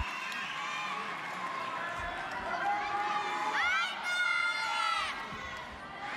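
Arena crowd cheering and calling out, with high voices shouting loudest between about three and five seconds in.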